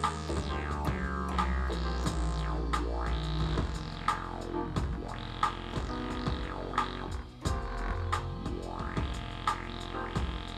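Roland MC-303 groovebox synth sounds played from a MIDI keyboard: held low bass notes under repeated sweeping, swooping tones, with short sharp hits scattered through.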